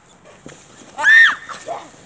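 A child's short, very high-pitched squeal about a second in, rising then falling in pitch.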